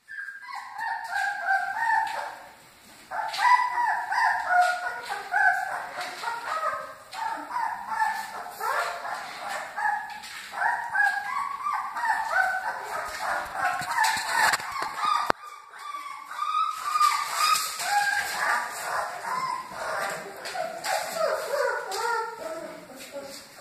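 Great Dane puppies whimpering and yipping: a near-continuous run of short, high-pitched cries, with a brief pause about three seconds in.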